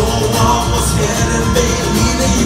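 Live acoustic band playing: strummed acoustic guitars, cello and saxophone over a steady beat, in a passage between sung lines.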